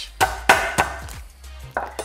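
Garlic clove being smashed under the flat of a chef's knife on a wooden cutting board: a few sharp knocks, the loudest about half a second in and another near the end.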